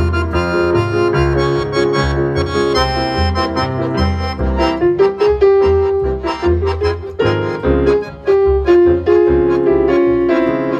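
A small acoustic band playing an instrumental passage live: plucked double bass notes under piano and the held tones of an accordion.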